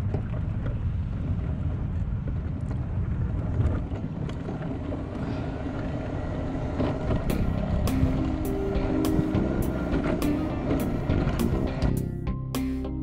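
Quickie power wheelchair driving over parking-lot pavement: a steady low rumble of motors and wheels, with wind on the microphone. About seven seconds in, music fades in with held notes and a steady beat of about two clicks a second.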